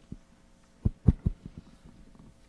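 Handling noise from a handheld microphone being picked up: a few short, dull thumps, the loudest about a second in.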